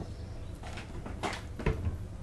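Salad being tossed in a bowl with wooden salad servers: a few faint, short knocks and rustles of leaves.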